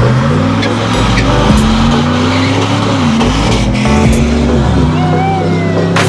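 A fourth-generation Chevrolet Camaro's engine is held at high revs with its tyres spinning and squealing in a burnout. The engine pitch dips and climbs twice as the throttle is worked, and a few high tyre squeals come near the end. Voices can be heard beneath it.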